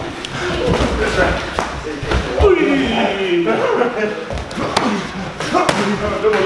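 Gloved punches and kicks landing during Muay Thai sparring: several sharp thuds scattered through, over indistinct talking.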